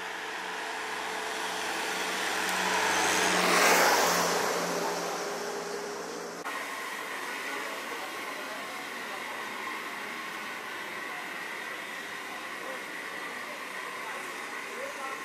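Car engine running steadily at idle, with the rush of a vehicle passing close by that builds to a peak about four seconds in and fades. About six and a half seconds in, the sound cuts abruptly to a steady outdoor background hum.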